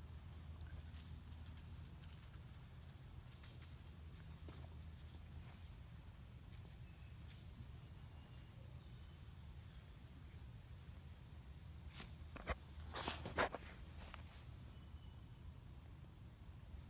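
Quiet outdoor scene with a steady low rumble and faint scattered rustles of dry fallen leaves; about twelve seconds in comes a short cluster of louder crackling rustles and clicks.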